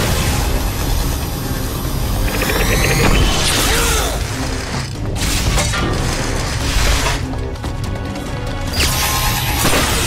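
Animated-fight soundtrack: a dramatic music score under energy-blast and impact sound effects, with several heavy booms through the stretch.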